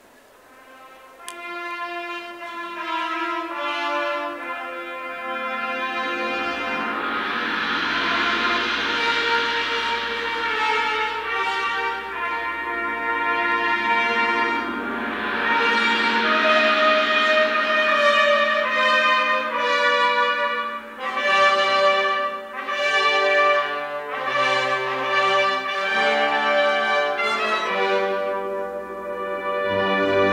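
Brass-led recessional music for the procession out of the hall, starting suddenly about a second in with sustained chords that swell and grow louder.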